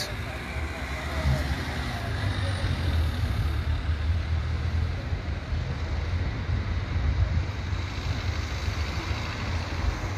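Steady low rumble of city street noise, with bystanders' voices mixed in.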